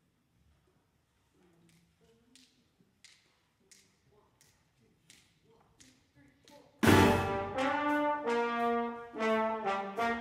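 Near silence with a few faint small sounds, then about seven seconds in a jazz big band's brass section of trumpets and trombones comes in loud and together, playing short punchy notes.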